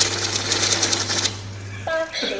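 Electric banknote counting machine running, its motor humming steadily while notes riffle through it in a rapid flutter. The flutter stops about a second in, and the motor hum carries on briefly before cutting off near the end.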